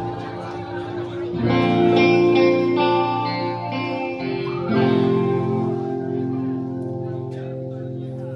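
Live skramz band's electric guitars playing sustained, ringing chords, changing about a second and a half in and again near five seconds, with no steady beat.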